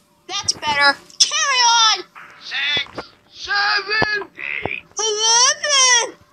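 High-pitched, squeaky cartoon voices making a string of short wordless vocal sounds, each sliding up and down in pitch, with brief gaps between them.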